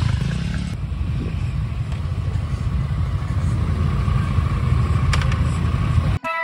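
Motorcycle engine running steadily with a low, even sound and no revving.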